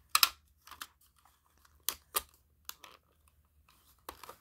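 Sharp plastic clicks and rustles, about six in all, the loudest at the very start, as a 9-volt battery is fitted into a smoke detector's battery compartment and the unit is handled. The detector gives no beep.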